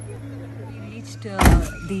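A single loud thump about one and a half seconds in, over a steady low hum, with a voice starting just after it.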